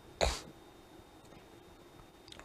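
A single short cough about a quarter second in, sharp at the start and dying away quickly, over a faint steady hiss.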